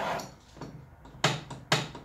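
Two sharp knocks about half a second apart, from a screwdriver and aluminium miter gauge being handled against the table saw's top.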